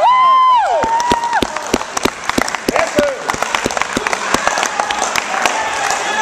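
Spectators cheering with a loud held shout, then clapping for about four seconds as the referee signals ippon to end a judo bout.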